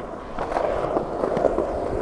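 Skateboard wheels rolling on smooth concrete, a steady rolling noise that comes up about half a second in as the board picks up speed.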